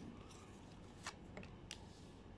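Faint handling of a tarot deck as a card is drawn from it: soft sliding of cards against each other, with three brief light clicks in the second half.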